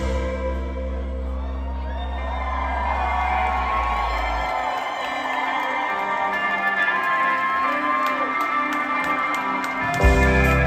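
Rock concert crowd cheering and whooping over a held keyboard and bass drone between songs; the low bass drops out about halfway through, and the full band comes back in loudly right at the end.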